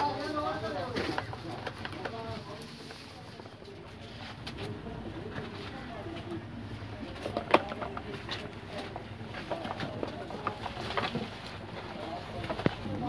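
Pigeons cooing in the background, with scattered clicks and taps of a screwdriver on screws in a plastic heater casing; the sharpest click comes about seven and a half seconds in.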